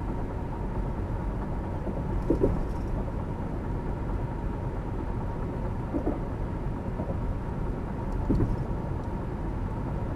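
Steady low road and engine rumble inside the cabin of a Cadillac SRX cruising at about 60 mph.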